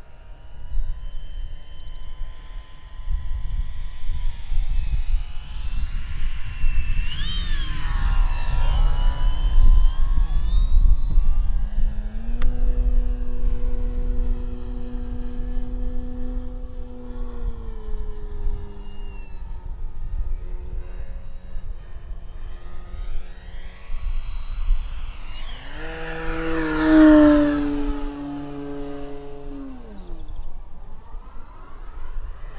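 Electric brushless motor and 15x8 inch wooden propeller of an Avios Grand Tundra RC plane flying overhead, its prop tone rising and falling in pitch with throttle and distance. It is loudest a few seconds before the end.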